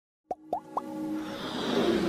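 Animated logo intro sound effects: three quick rising pops, then a swell that builds toward the end.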